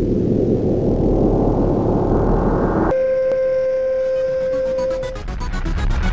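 Intro sound design: a dense rumbling noise cuts off sharply about halfway through and gives way to a steady electronic test-tone beep lasting about two seconds. Electronic intro music with a fast pulsing beat comes in under it.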